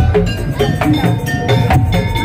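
Madurese daul (tongtong) percussion music played loudly: a driving drum beat with struck metallic, bell-like notes ringing over it.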